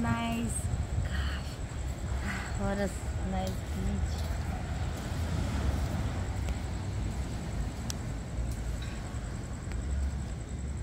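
A steady, uneven low rumble of wind buffeting the phone's microphone on an open beach, with a few short vocal sounds from a voice in the first four seconds.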